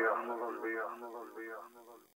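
A thin, filtered-sounding voice repeating as a fading echo after the beat has cut out, dying away to silence near the end.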